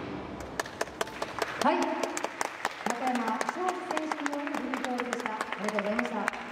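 Audience applauding with scattered hand claps, starting just after the posing music cuts off, and people's voices calling out from about a second and a half in.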